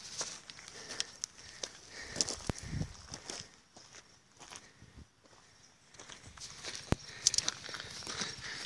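Footsteps on a dirt trail, with scattered clicks and rubbing from a handheld phone being moved about; it goes quieter for a couple of seconds a little past the middle.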